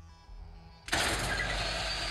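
A substation circuit breaker's operating mechanism: a steady mechanical rushing noise starts suddenly about a second in and keeps going.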